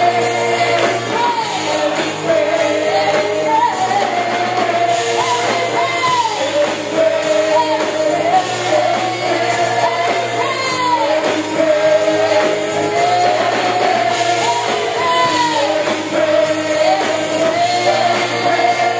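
Live worship music: a church praise team's singer carries a melody over a band with a steady beat, played through the PA in a large hall.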